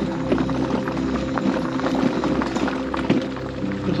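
Electric mobility scooter running along a dirt-and-gravel trail: a steady, unchanging motor hum with irregular small knocks and rattles from the wheels on the rough surface.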